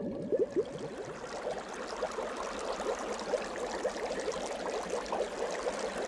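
Bubbling water sound effect: many short bubble blips over a steady watery hiss, most crowded in the first second.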